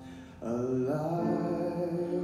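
A young man's voice singing a slow solo with long held notes, over a quiet steady accompaniment. His voice drops out briefly at the start and comes back in about half a second in.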